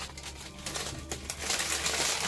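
Brown paper bag and a small plastic bag crinkling as they are handled, the rustle growing louder about one and a half seconds in.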